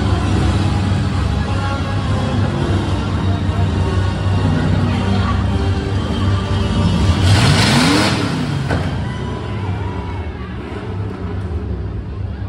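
Off-road truck engines running in a dirt arena under steady PA music. About seven seconds in, one engine revs up and drops back, with a short burst of noise.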